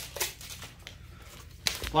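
A sheet of mask film or backing paper rustling and crinkling as it is handled, in two short bursts: one just after the start and one near the end.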